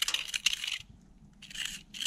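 Utility knife blade scraping crumbling lime mortar out of the joints of an old brick wall, in two short scratchy strokes with grit crackling loose. The mortar is so friable that a knife digs it out, a sign that it has failed.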